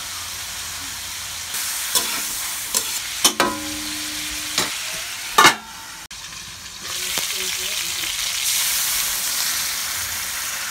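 Chicken pieces frying in oil in a metal wok, a steady sizzle. In the middle there are several sharp metal knocks and a short ringing clang, the loudest knock a little after five seconds in. The sizzle turns quieter and muffled for about a second just after that, then comes back up.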